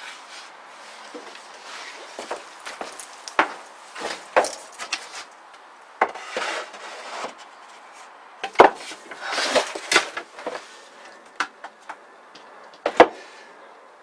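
Irregular wooden knocks, bumps and scrapes as plywood cabinet parts are handled and moved about. A few sharper knocks stand out, the loudest near the end, with short scraping stretches in between.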